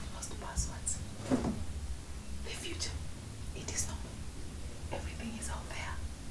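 Soft, half-whispered speech in short bursts with sharp hissing s sounds, over a low steady hum.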